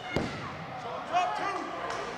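A single thud on the wrestling ring's mat during a pin attempt, followed by faint voices from the crowd.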